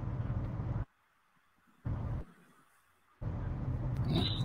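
Low, steady rumble of car road and engine noise picked up by a phone microphone inside a moving car; it cuts out to dead silence twice, returning briefly in between.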